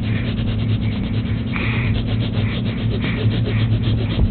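A steady low hum with a fast, even rubbing or ticking noise over it.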